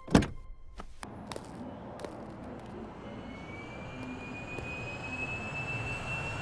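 A car door shutting with a single heavy thump, then a few faint clicks over a low steady background. A thin high whine rises slowly in pitch through the second half.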